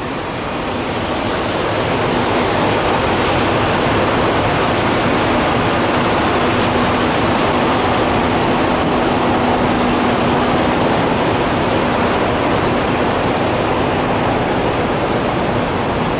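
Steady, loud mechanical rushing noise from running truck machinery, with a faint steady hum under it for most of the time.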